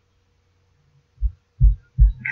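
Two short, dull low thumps a little after a second in, close together, over a faint steady low hum.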